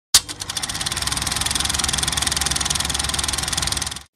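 Logo-intro sound effect: a sharp hit, then a loud, steady, rapid engine-like rattle that cuts off suddenly.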